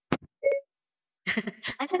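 A short click, then a brief electronic beep made of two steady pitches sounding together, about half a second in.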